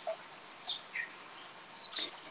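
A few short, high bird chirps at different pitches, scattered over a steady faint background hiss.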